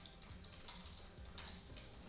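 A few faint clicks of computer keyboard keys, two of them clearer, under a second apart, over a low steady hum.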